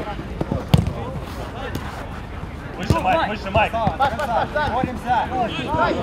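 Football kicked on an artificial-turf pitch, the loudest kick about a second in, with a few lighter knocks. From about halfway on, players shout short, repeated calls.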